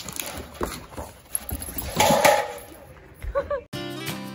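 A Boston terrier chewing and mouthing a plastic bottle: irregular plastic crackling and crunching, loudest about two seconds in. Acoustic guitar music cuts in just before the end.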